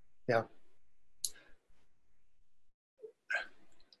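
A man says a quiet "yeah", then small mouth clicks and a short intake of breath before he starts to speak.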